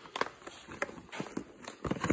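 Footsteps and the handling of a boxed frozen meal: scattered light rustles and clicks, with a louder knock near the end.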